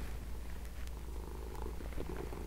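A domestic cat purring steadily.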